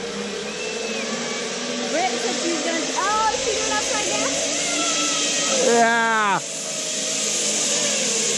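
Zip-line trolley running along the steel cable as a rider goes down, a steady whirring hiss that builds over several seconds. Voices call out over it, and near the middle a falling, whoop-like cry ends as the hiss drops off suddenly.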